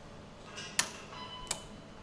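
Preset torque driver clicking twice, about 0.7 s apart, as the disc brake caliper's pad retention screw reaches its 2 Nm setting; each click rings briefly.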